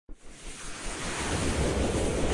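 A whoosh sound effect: a wind-like rush of noise that starts suddenly and swells steadily in loudness.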